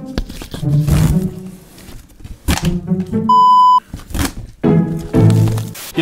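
Background music interrupted about three seconds in by a single loud bleep, a steady high tone lasting about half a second, the kind laid over a word to censor it.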